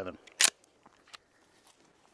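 A single sharp click about half a second in, then a few faint ticks.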